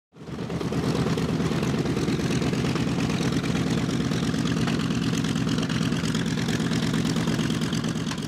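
North American B-25 Mitchell's twin Wright R-2600 radial engines running steadily as the bomber taxis past. The drone fades in over the first half-second, then holds level.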